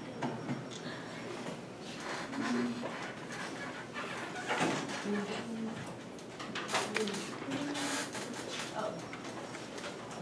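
Faint, indistinct voices in the background of a quiet room, with a few brief noises scattered through.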